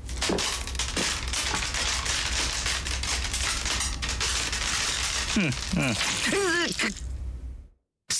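Dense crackling, crunching noise made of many sharp clicks, joined by a person's voice rising and falling briefly in the last couple of seconds, then cutting off suddenly.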